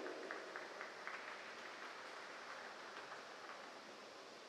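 Faint, steady background noise of a large indoor ice rink hall, with a few light scattered clicks over the first three seconds.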